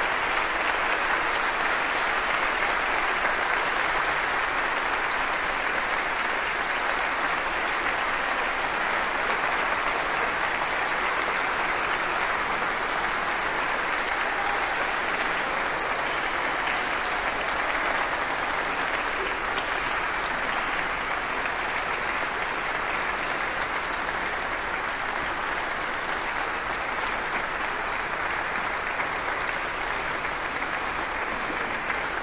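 Audience applauding steadily and at length in a large reverberant chapel, easing off slightly near the end.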